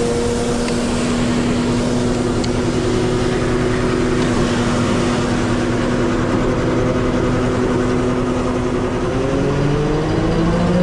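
Sewer jetter truck's engine and high-pressure water pump running steadily under load, its pitch rising about nine seconds in as it speeds up.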